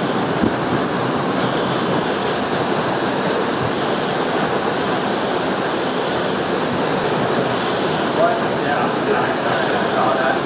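Category 4 hurricane wind and torrential rain, a loud, steady rush of noise without a break.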